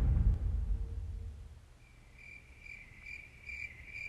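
Cricket chirping sound effect, the comedic 'crickets' cue for an awkward silence: a steady run of short chirps, a little over two a second, starting about halfway in. Before it, a low rumble fades away.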